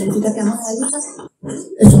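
Speech: a woman speaking Spanish into a microphone, with a short pause a little after a second in.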